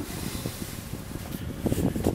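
A low, uneven rumble of handling noise on the camera's microphone as the handheld camera is moved about.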